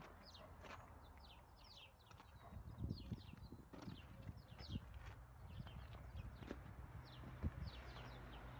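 Small birds chirping in quick, short falling notes throughout, over a faint low background rumble, with a few soft footsteps on tarmac.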